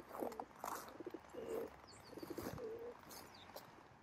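Feral pigeons cooing: two low coos about a second apart, with faint high chirps of small birds over them.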